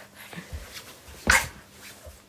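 A young child giving one short, sharp fretful cry about a second in.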